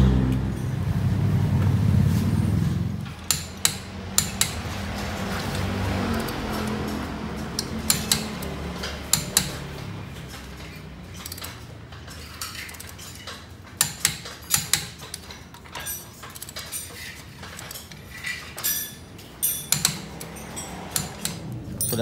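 Steel hand tools clinking and tapping on car parts in irregular sharp clicks as a wheel is refitted and its nuts tightened with a wrench, after a loud low hum in the first three seconds.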